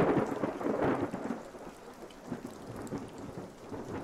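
Thunderstorm: rain falling with a roll of thunder that comes in suddenly, is loudest in the first second, then fades away over the next few seconds.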